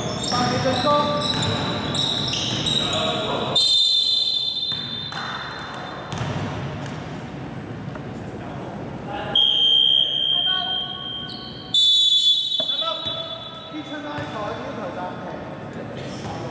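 Indoor basketball game: sneakers squeaking on the wooden court and a ball bouncing, with a referee's whistle blown three times, about four, nine and a half and twelve seconds in.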